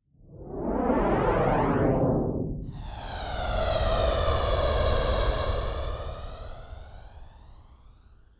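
Logo sting sound effect: a whoosh that swells up and falls away over the first two and a half seconds, then a held, ringing pitched tone over a deep rumble that slowly fades out.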